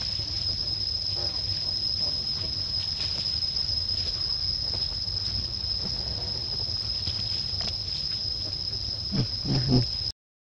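Steady high-pitched drone of insects over a low steady rumble; near the end, a brief low call rises and falls, the loudest sound.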